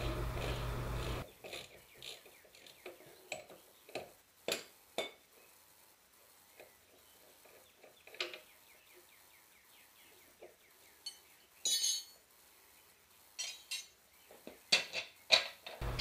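Faint, scattered metallic clicks and clinks of hand tools on the rear suspension as the bolt that holds the shock absorber on is worked loose, with a quick run of clicks near the end.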